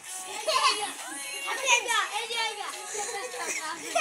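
Children's voices: high-pitched chatter and calling out as children play.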